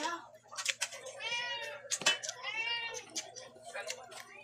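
A cat meowing twice, two drawn-out calls that rise and fall, about a second apart, with clicks of someone chewing around them.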